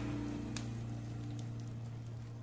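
Faint crackling of a wood fire in a fireplace, with a few sparse pops, under the low fading tail of a song's last held note.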